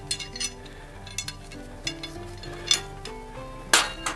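Background music with held notes, over a few light metal clinks from a traction belt's hook and buckle being handled, with a louder clack near the end.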